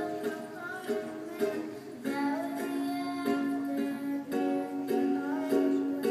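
A ukulele strummed in a steady rhythm while a girl sings along into a microphone.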